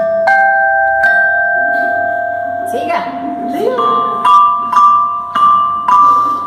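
Metallophone with metal bars in a wooden box, played with mallets: single notes struck one at a time, about six in all, each ringing on for a second or more.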